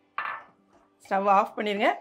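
A steel ladle scrapes once, briefly, against the side of a stainless steel pot while stirring a thick milk dumpling mixture. A woman's voice speaks from about a second in.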